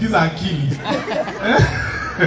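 A man's voice into a handheld microphone, talking and chuckling.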